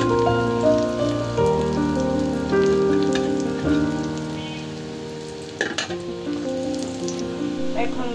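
Sliced onions sizzling in hot oil in an aluminium pot, under background music of long held notes that change every second or so. A single sharp knock comes about five and a half seconds in.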